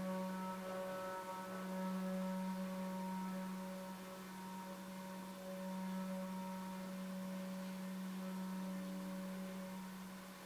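Symphony orchestra playing a soft, sustained passage: one low note held throughout, with quieter higher notes held above it.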